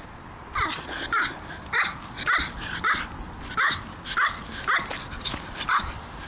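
Griffon Bruxellois barking in a run of about ten short, high barks, roughly two a second, starting about half a second in.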